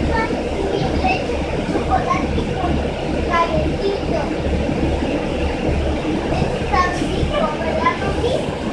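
City transit bus engine idling at a stop, heard from inside the cabin as a low rumble that pulses about twice a second, under the chatter of passengers and children.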